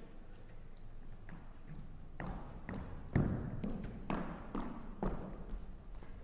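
Footsteps on a wooden stage floor, about two a second, each step a short knock, the loudest about halfway through.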